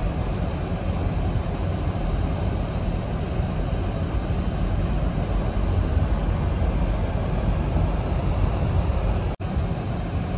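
Steady low rumble inside a car's cabin as it drives slowly through a flooded street: engine and tyres running through standing water. There is a split-second gap in the sound near the end.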